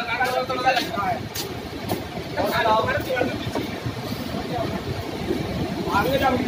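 Steady rushing roar of the Bhagirathi river in spate, with snatches of people's voices over it at the start and about halfway through.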